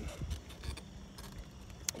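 Bicycle ride noise: low wind rumble on the microphone with faint rattling clicks, and one sharp click near the end.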